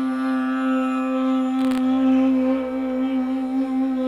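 A Persian ney holds one long low note, wavering slightly in the middle, over the steady drone of a tanpura. A brief click comes about a second and a half in.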